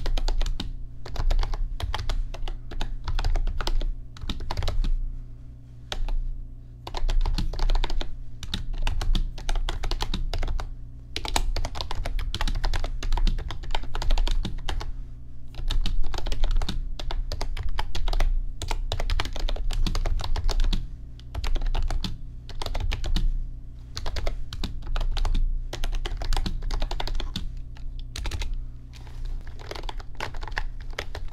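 Fingers typing quickly on a backlit computer keyboard: a dense run of key clicks in stretches of a few seconds, broken by short pauses.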